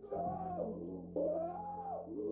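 A man screaming in two long, wavering cries, the second starting about halfway through, over a low steady hum.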